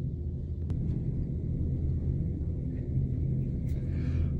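A steady low background rumble, with one faint click a little under a second in.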